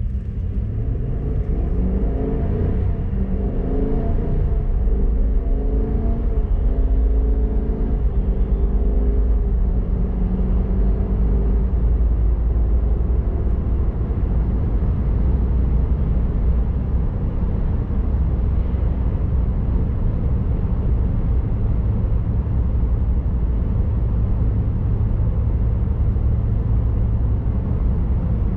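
Cab-interior sound of a 2024 Silverado HD's 6.6-litre gas V8 pulling away at part throttle through the 10-speed Allison automatic. The engine note climbs and drops back at each of several upshifts over the first dozen seconds, then settles into a steady low drone with road noise at highway cruising speed.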